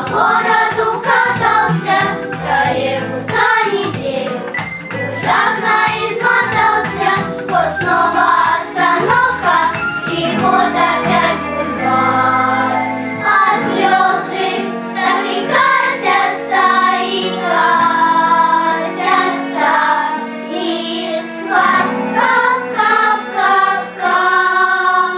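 A choir of young girls singing a song together over instrumental backing; the low bass drops out about halfway through.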